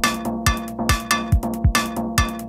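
Electronic techno track: a kick drum falling in pitch about twice a second, with ringing percussion strikes between the kicks over a steady held tone.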